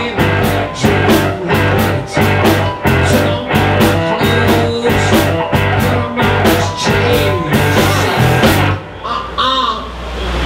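Live blues-rock band playing: an electric cigar box guitar over bass guitar and drums keeping a steady beat. The drums stop near the end, leaving bending pitched lines.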